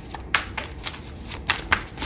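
A deck of tarot cards being shuffled by hand: an irregular run of crisp card snaps, several in the two seconds.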